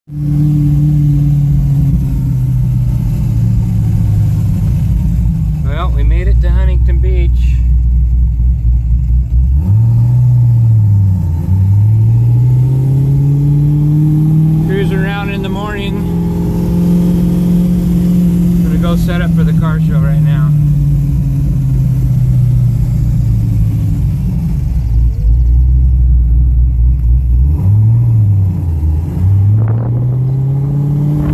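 GTM supercar's engine heard from inside the cabin while driving. Its note climbs and falls with the throttle, with quick drops and recoveries about ten and twenty-eight seconds in.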